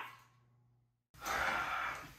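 A man's weary sigh: a breathy exhale about a second long, after a moment of dead silence.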